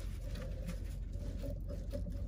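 Faint, scattered small clicks of a metal pry tool working against a rusty air-brake slack adjuster as a seized brake is backed off, over a steady low hum.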